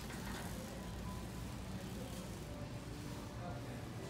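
Big-box store ambience: a steady low rumble with faint background music over the store's speakers.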